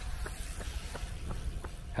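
Running footsteps, about three light strikes a second, over a steady low rumble of wind and handling on a handheld phone's microphone.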